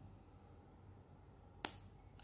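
A single sharp click from a hot glue gun held against the end of an AA battery, about one and a half seconds in, over a quiet room.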